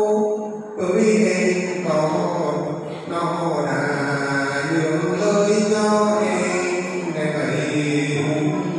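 A man singing a Mường giao duyên folk love song into a microphone, unaccompanied, in a drawn-out chanted style: long held notes with slow bends in pitch, breaking for breath about a second in, again around three seconds and shortly before the end.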